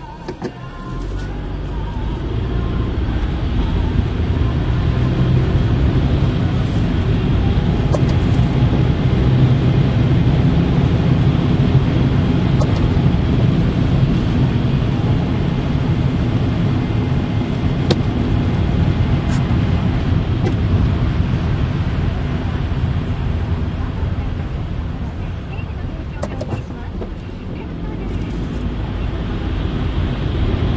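Car engine and tyre noise heard from inside the cabin as the car pulls away from a stop on a wet, slushy road. It grows louder over the first few seconds, settles into a steady low road rumble, and eases a little near the end as the car slows for the next light.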